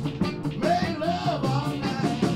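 Texas blues band playing live, with a steady beat and bass line under a melodic line that bends up and down in pitch about halfway through.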